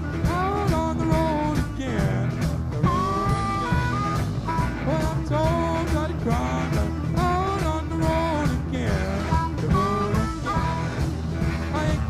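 Live blues-rock band playing a boogie: an electric guitar lead with bent, gliding notes over bass and steady drums.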